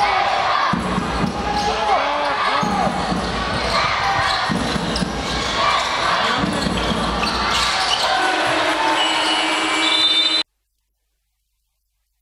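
Live basketball game in an echoing gym: the ball bouncing on the hardwood court, sneakers squeaking and voices from players and the crowd. A steady held tone comes in near the end, and the sound cuts off suddenly to silence about ten seconds in.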